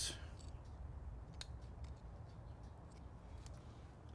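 Quiet handling sounds: a few faint, sharp clicks of metal kitchen tongs as crisp bacon strips are laid onto a burger, over a low, steady background rumble.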